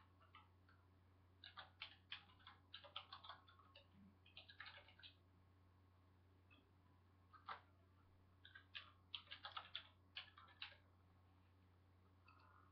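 Faint typing and clicking on a computer keyboard and mouse: two bursts of quick clicks, the first starting about a second and a half in, the second about seven and a half seconds in, over a low steady hum.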